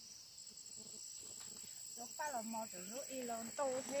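Insects drone steadily at a high pitch in the background, and a woman starts talking about two seconds in.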